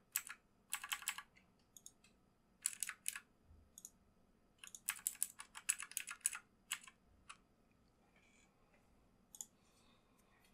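Keys tapped on a computer keyboard in several short bursts of quick clicks, with pauses between; the longest run comes about halfway through.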